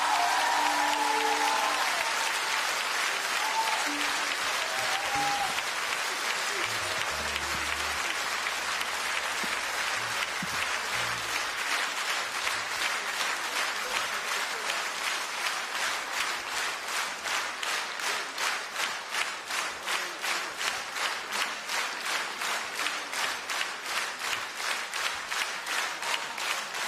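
Large audience applauding. The clapping starts loud, and from about halfway through it turns into rhythmic clapping in unison, about two to three claps a second.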